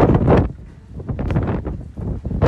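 Storm wind buffeting a phone's microphone in gusts, loudest in the first half-second, easing off around the middle and picking up again.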